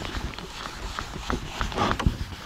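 Whiteboard eraser wiped back and forth across a whiteboard, a rough rubbing with a few irregular light knocks. The rubbing is densest near the end.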